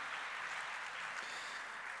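Faint audience applause in the hall, an even patter that tapers slightly near the end.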